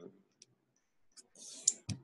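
A pause with small mouth noises: a few faint clicks, a short breath in, then a sharp lip or tongue click near the end, just before the man speaks again.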